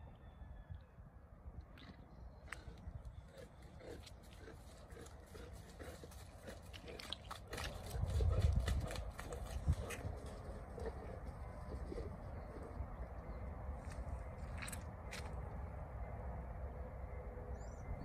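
Quiet footsteps crunching on wet gravel and mud, with scattered sharp clicks and a low rumble on the microphone about eight seconds in.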